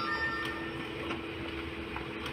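Fujifilm Apeos C325z colour multifunction printer running as it prints a job: a steady hum with faint, regular ticks and a brief higher whine near the start.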